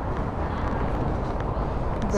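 Steady low rumble of city street traffic, with no single sound standing out.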